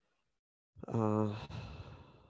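A man's brief wordless vocal sound about a second in: a steady low-pitched voiced tone lasting about half a second, then trailing off into breath, like a sigh.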